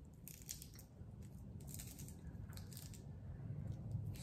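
Close-up crunching of raw lettuce being chewed, in three short crackly bursts about a second apart.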